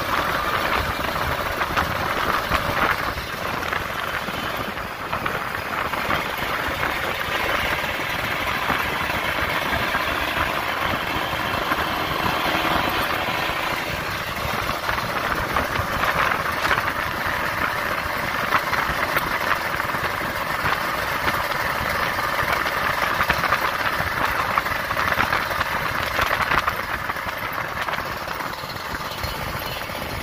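On-board riding sound of a Kawasaki Ninja RR's two-stroke single-cylinder engine running at cruising speed, mixed with steady wind and road noise on a wet road.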